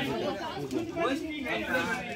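Several people talking at once: overlapping chatter of voices.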